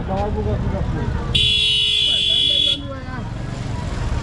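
A vehicle horn sounds one steady blast of about a second and a half, starting a little over a second in. Under it is the low rumble of slow, jammed traffic.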